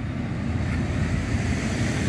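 Road traffic going by: a steady rumble of engine and tyre noise that swells a little after the first half second.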